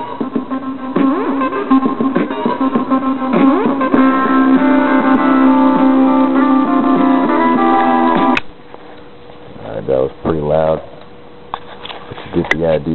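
Guitar music from an MP3 player, played through a homemade breadboard transistor amplifier (a Darlington pair of 2N4401s) into a small speaker with the volume turned all the way up. The music cuts off suddenly about eight seconds in, followed by a brief voice-like sound.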